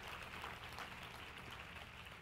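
Faint audience noise in a large room: a dense, even patter of light clicks and rustle, like scattered light clapping or tableware clatter.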